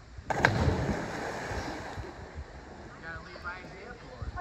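Two people plunging together into a creek from about 15 feet up make a single loud splash a moment in. The churning water dies away over a second or so.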